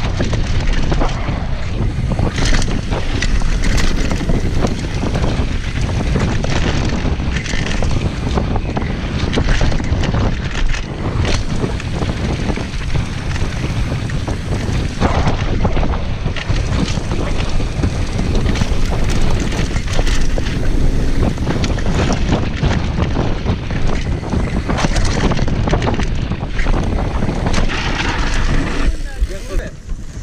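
Wind buffeting the mic of a bike-mounted action camera during a fast mountain-bike descent, over a steady rumble of tyres on dirt and gravel and frequent clatters and knocks from the Transition TR500 downhill bike over rough ground. The noise drops near the end as the bike slows to a stop.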